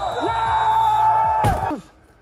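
A man's long held yell, then a single heavy slam about one and a half seconds in as a heavy dumbbell is dropped onto a rubber floor mat.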